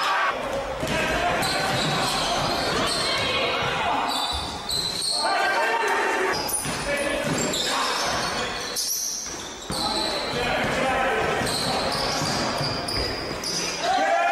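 Live court sound of an indoor basketball game: a ball bouncing on the hardwood floor and indistinct players' voices echoing in a large gym.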